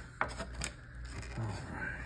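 Cardboard-and-plastic collection box packaging being handled as it is opened: two sharp clicks about half a second apart, then a brief low vocal murmur.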